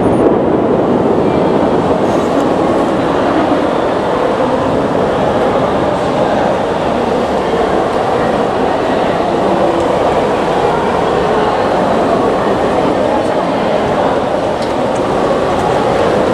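Steady, loud noise of a heavy downpour heard from behind a window, mixed with a low murmur of voices.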